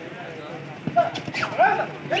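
Men shouting in short sharp calls over crowd murmur at a kabaddi match. The shouts start about a second in and grow louder as the defenders go in for a tackle on the raider.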